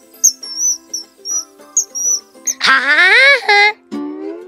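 A bird call of short, high chirps repeated a few times a second, over light children's background music. Near the end a loud voice with rising pitch cuts in for about a second.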